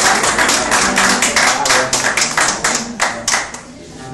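A small audience clapping by hand, the claps thinning out and dying away about three and a half seconds in.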